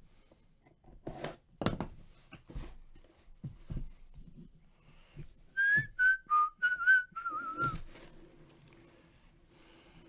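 A person whistling a short tune of about six quick notes, the last one longer and wavering, over knocks and rustles of a cardboard box and its seal being handled and opened.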